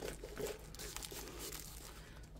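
Faint rustling with many small irregular crackles: a diamond painting canvas, its plastic cover film and paper backing, being rolled up by hand.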